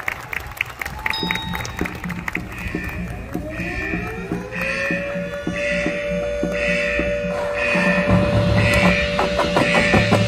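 High school marching band and front ensemble playing a building passage of their show music. Steady percussion ticks run under a pulsing high figure, and a few seconds in a tone slides up and then holds. Heavier drums come in near the end as the music grows louder.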